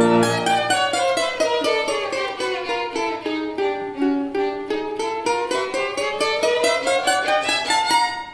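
Domra, violin and piano playing together: a run of quick, evenly spaced plucked notes that falls in pitch over the first half and climbs back up over the second half.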